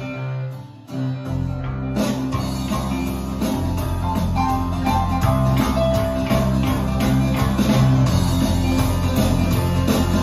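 Live rock band playing an instrumental passage: acoustic guitar strumming over electric bass, keyboards and a drum kit. The sound drops away briefly just after the start, then the full band comes back in and the bass and drums fill out a few seconds later.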